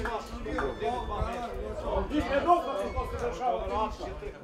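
Several men talking indistinctly over one another, with no clear words.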